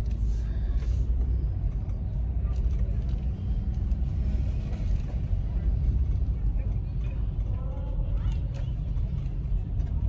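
Steady low rumble of a car's engine heard from inside the cabin.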